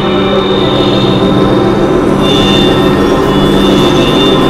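Experimental synthesizer drone music, a dense, loud cluster of steady sustained tones played by Max/MSP through hardware synths such as a microKorg XL. A new high tone enters a little after two seconds in.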